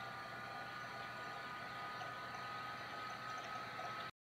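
Steady low hiss with a faint high whine: background room noise, with no distinct cutting or handling sounds.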